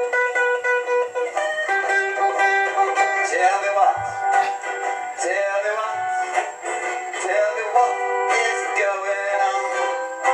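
A man singing a reggae song while strumming a guitar. The sound is thin, with almost no bass.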